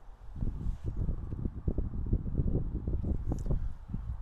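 Low, irregular rumbling and rustling noise on a clip-on microphone, starting a moment in and running unevenly throughout.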